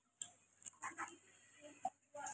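A few faint, sharp clicks and taps, about five in two seconds, on a quiet background.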